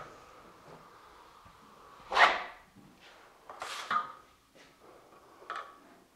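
Steel drywall trowel scraping through wet joint compound, with two short scrapes about two and four seconds in (the first the loudest) and a fainter one near the end, over a faint steady hum.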